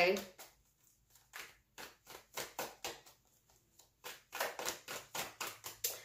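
Tarot cards being shuffled by hand: a run of quick, crisp card clicks, sparse at first and coming thicker and faster in the second half.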